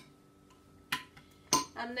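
Two sharp clicks, just under a second in and again about half a second later, from a metal spoon knocking against a mixing bowl.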